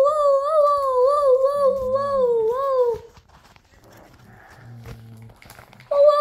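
A child's voice humming one long, wavering note for about three seconds, then a pause, and a second held hum starts at the very end.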